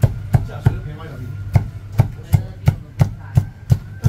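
Heavy cleaver chopping marinated meat on a thick wooden chopping block: sharp knocks, a short pause about a second in, then a steady run of about three chops a second. A steady low hum runs underneath.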